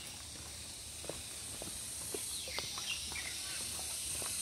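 A few short, high, descending bird chirps about halfway through, over a steady high-pitched hiss that grows louder near the middle.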